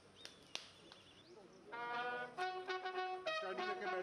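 A bugle call begins about two seconds in, long held notes stepping between a few pitches, sounded as funeral honours. Two sharp clicks come in the first second, before it.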